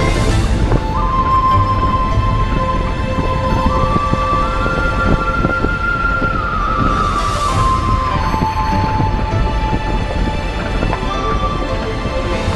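Background music: a held melody line that steps up in pitch and then back down over a steady low drone, with a soft high wash swelling twice.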